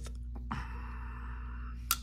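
A Shirogorov Quantum Gen 2 folding knife being closed by hand, with a faint click about half a second in, a soft hiss after it, and a sharp metallic click near the end as the blade snaps shut.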